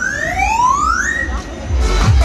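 A siren-like electronic sound effect from the fairground ride's sound system: two overlapping tones sweeping upward, the lower one rising for about a second and then stopping, over low bass music.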